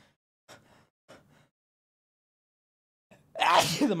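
A man sneezes once, loudly and suddenly, about three seconds in, after a couple of faint short breaths. The sneeze is brought on by a burning nose, and laughter follows right after it.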